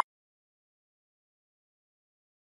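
Dead silence, after a steady electronic beep cuts off at the very start.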